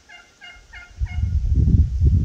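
A red-breasted toucan giving a rapid, even series of short croaking notes, about five a second, that stops just before a second in. A loud low rumble on the microphone then takes over.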